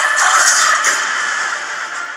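Film trailer soundtrack between lines of dialogue: a dense, hissy wash of score and sound effects with a few faint held tones, slowly growing quieter.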